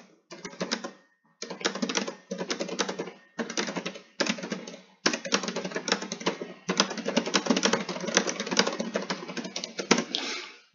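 Typing on a computer keyboard: rapid runs of keystroke clicks broken by short pauses.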